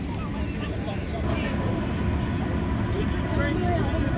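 Chatter of a crowd of people walking, many scattered voices over a steady low rumble.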